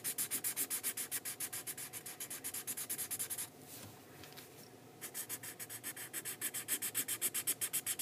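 Black Sharpie marker scribbling rapidly back and forth on paper, filling in a solid area at several strokes a second. The strokes stop for about a second and a half near the middle, then start again.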